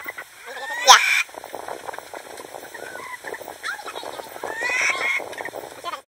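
Hens clucking, with one loud squawk about a second in and a livelier run of clucking near the end.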